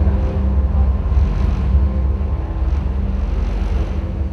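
Deep, steady bass rumble with a few faint held tones, part of a presentation soundtrack played over a hall's sound system, slowly getting quieter.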